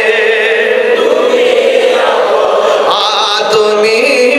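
A man chanting an Islamic devotional song in praise of the Prophet, in long, wavering held notes.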